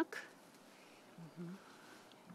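Low, quiet background with one short, soft vocal murmur a little past the middle, like a brief 'mm' from someone tasting.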